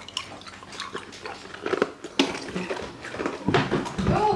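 A boy's breath and mouth sounds: irregular sharp breaths, gasps and small mouth clicks, loudest about two seconds in and again near the end, as he reacts to a burning mouth from ghost chili pepper and hot sauce.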